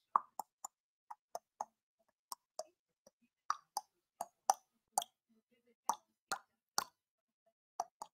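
A faint series of about seventeen short, sharp clicks, unevenly spaced and often coming in pairs, roughly two a second.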